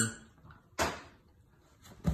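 A single short thump a little under a second in, fading quickly, with little else to hear.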